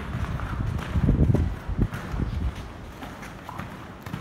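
A horse's hooves striking sand footing at a canter: dull, heavy thuds that are loudest between about one and two and a half seconds in, with one sharper knock among them.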